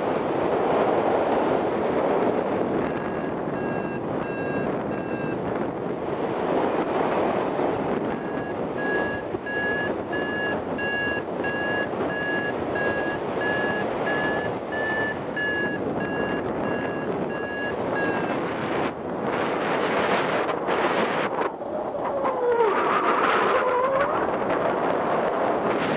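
Paragliding variometer beeping in short, evenly spaced tones about two a second, the signal that the glider is climbing in rising air. A brief spell of beeps is followed by a longer one of about ten seconds, whose pitch edges up slightly midway. Wind rushes steadily past the microphone throughout.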